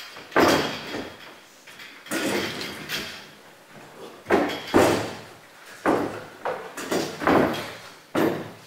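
Chairs being carried and set down on a hard floor: a series of about eight sudden knocks and scrapes, each dying away within a second.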